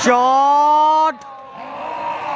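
A sharp crack at the start, with the batsman's bat just through its swing at a tape ball, followed by a man's long, drawn-out shout of about a second as the ball goes for six.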